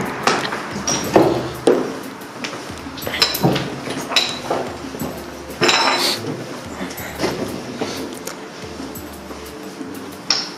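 Footsteps crunching over rubble and broken glass, with scattered clinks and knocks at irregular moments, over a faint, steady musical drone.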